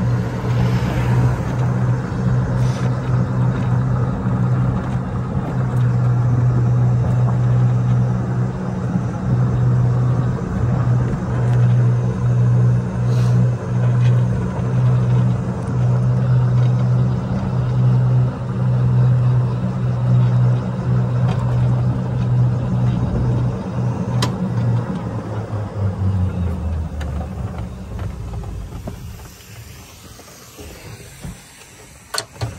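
EZGO TXT electric golf cart driving at a steady speed, its motor and drivetrain giving a steady low hum under tyre and wind noise. Near the end the hum drops in pitch and fades as the cart slows.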